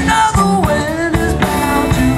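A live blues band playing an instrumental passage: electric guitar, bass guitar and drum kit, with a lead line that bends up and down in pitch.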